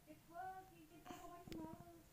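A child singing softly to herself, wordless held notes in two short phrases, with a sharp click about one and a half seconds in.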